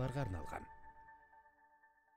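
A voice finishing the spoken '12+' age-rating announcement over a sustained chime tone. The voice stops about half a second in and the chime fades away over the next second and a half.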